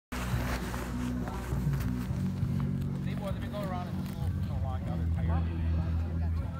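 People's voices talking, over a steady low hum that shifts pitch now and then. The voices are clearest in the second half.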